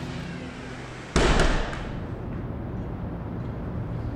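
A sudden loud boom about a second in, fading into a steady low rumbling noise.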